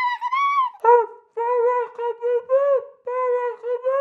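Recorder playing a quick run of short notes, high at first, then dropping about an octave about a second in and running on at the lower pitch.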